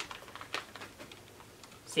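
A few faint clicks and crinkles from a plastic pouch of dog treats being handled and pulled open.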